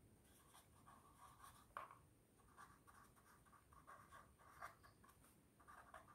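Faint, intermittent scratching of a pen writing by hand on paper.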